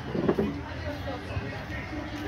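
Distant voices of people chatting outdoors over a low steady background rumble, with one brief louder sound about a quarter second in.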